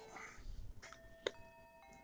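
A faint bell-like chime: a few ringing tones start about a second in, others join one after another, and they hold to the end, with a light click just after the first tone.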